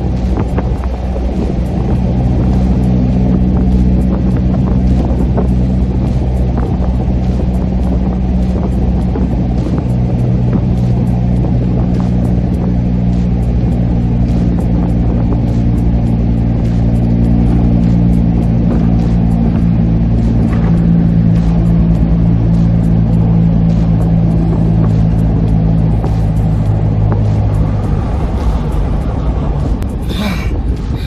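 Daihatsu Copen Xplay's small three-cylinder turbo engine and exhaust droning steadily at cruising speed, heard from the open-top cabin inside a road tunnel. The pitch holds nearly level, easing off slightly near the end.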